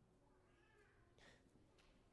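Near silence: room tone, with a very faint, brief high sound between about half a second and a second in.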